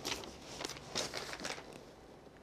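Handling noise from a framed picture being turned and moved: a few short rustles and light scrapes in quick succession.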